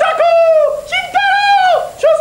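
A man's high falsetto hooting call made through cupped hands, imitating a bird: a run of about four loud held notes on one pitch, each dropping off sharply at its end.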